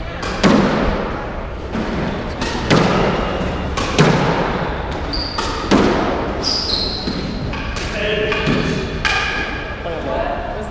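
Squash ball being struck by racquets and smacking off the court walls during a rally: sharp hits about every second or so, each ringing in the hard-walled court.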